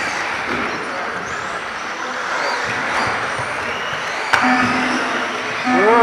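Battery-powered RC cars racing on an indoor track, their electric motors whining up and down in pitch as they accelerate and brake, over a steady hiss of tyres and hall echo. A single sharp knock about four seconds in, like a car striking the track or a barrier.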